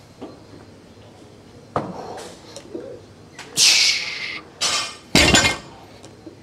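Barbell loaded with bumper plates being deadlifted and set back down on a wooden lifting platform: a knock, metallic clanking bursts, then a heavy thud about five seconds in as the weight lands.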